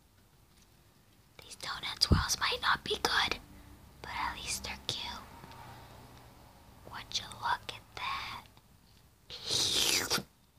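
A person whispering in several short phrases, with a single dull thump about two seconds in.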